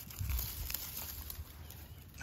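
Handling noise as a 110 Conibear trap holding a mink is pulled up out of dry beach grass: grass rustling and brushing, with a few faint clicks and a low rumble of handling in the first half second.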